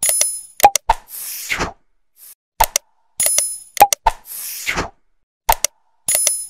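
Synthetic sound effects for a like-and-subscribe animation, repeating about every three seconds: a few sharp clicks, a bright bell-like ding, then a short whoosh.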